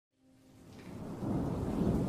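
Thunder rumbling with rain, fading in from silence and growing louder.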